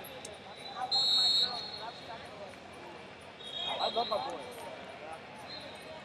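A short, shrill whistle blast about a second in, with a fainter high whistle tone around four seconds, over arena crowd chatter at a wrestling tournament.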